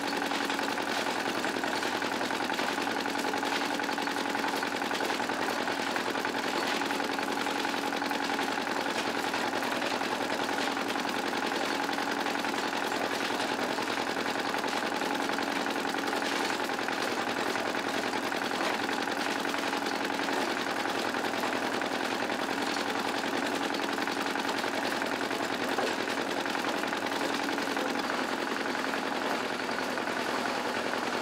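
Engine of a concrete mixer running steadily with a rapid, even beat that does not change in speed or loudness.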